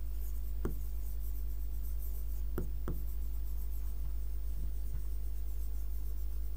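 Stylus writing on a digital board: three faint taps on the screen over a steady low electrical hum.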